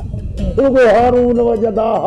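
A man's voice drawing out a long, held vocal sound at a nearly steady pitch, over background music.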